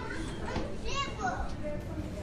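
Indistinct chatter of several voices, with a short high-pitched voice calling out about a second in.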